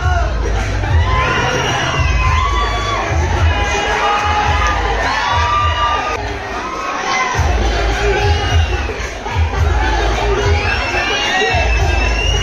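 Audience cheering and shouting loudly over dance music with a pulsing bass beat; the bass drops out briefly about six to seven seconds in.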